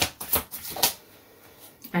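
A deck of tarot cards being shuffled by hand: several quick, papery slaps and riffles in the first second, then softer handling.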